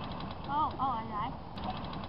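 A voice giving a wavering, pitch-bending "oh" about half a second in, over steady outdoor background noise.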